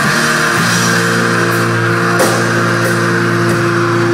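Live rock band playing loud with electric guitar, bass guitar and drum kit, recorded from among the crowd. Notes ring out held from about half a second in, with a sharp drum or cymbal hit about halfway through.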